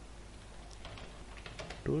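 Computer keyboard being typed on: a few quick runs of key clicks.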